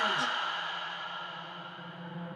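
Afro house DJ mix in a breakdown: the beat drops out just after the start, leaving a few held tones that fade and grow steadily quieter.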